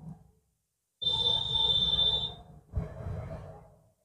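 Felt-tip marker rubbing on paper while colouring in a shape: a high steady squeak lasting about a second and a half, beginning about a second in, then a shorter, scratchier stroke.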